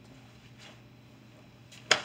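Faint swishes of a karate gi moving through the kata, then one sharp, very brief crack near the end: the uniform snapping on a fast strike.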